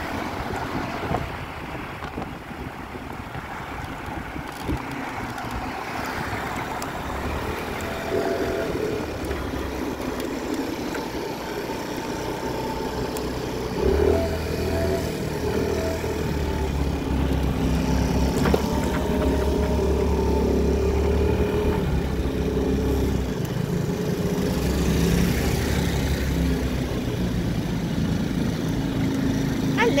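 Small motor scooter engines running at low speed, with wind rushing over the microphone at first; after about eight seconds the engine hum comes through more plainly, stronger from about halfway, as the scooters slow and idle.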